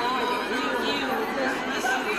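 Several women's voices talking over one another in lively chatter.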